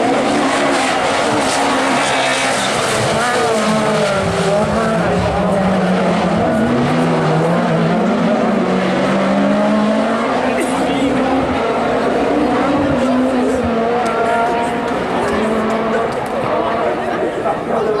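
Super 1600 rallycross cars' small four-cylinder engines revving hard, the pitch rising and dropping repeatedly with gear changes and lifts as the cars race past.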